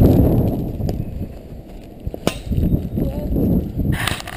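Wind buffeting the camera microphone as a low rumble, loudest in the first second and then easing off, with a single sharp click a little past the middle.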